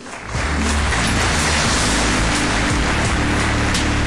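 Audience applauding after a speech, a dense, steady clapping that swells in just after the start, with music playing underneath.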